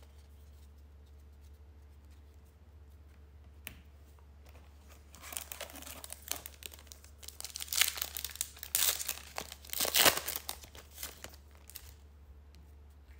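A trading card pack's wrapper being torn open and crinkled by hand. The tearing starts about five seconds in and comes in a run of crackling bursts, loudest near the end, over a steady low hum.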